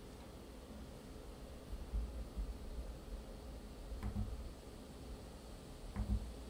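A laptop's small cooling fan running under a full Cinebench CPU load, a faint steady hiss that is very quiet, with a couple of soft low bumps.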